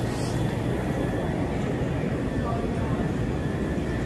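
Steady low hum of supermarket background noise from refrigerated display cases and ventilation, with faint voices in the distance.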